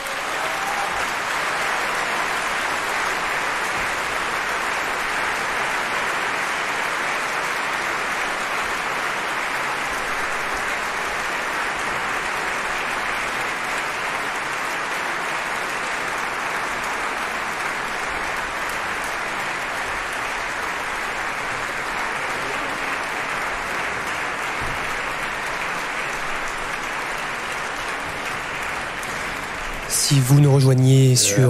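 Opera-house audience applauding steadily at the end of an act.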